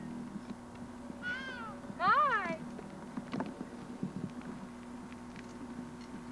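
Two short high-pitched vocal calls, each rising then falling in pitch, the second louder, over a steady low hum.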